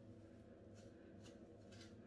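Faint, repeated soft strokes of a comb being drawn through a synthetic wig's fibres, against near silence.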